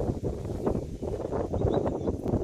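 Wind buffeting the microphone: an irregular, gusting low rumble.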